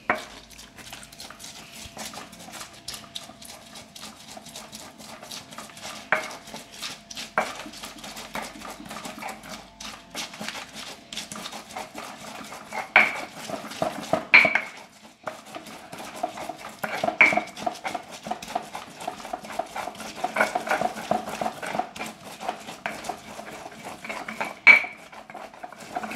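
Stone pestle grinding green chiltepín chiles, garlic and salt in a molcajete (stone mortar): a continuous gritty scraping and crushing, with a handful of sharper stone-on-stone knocks.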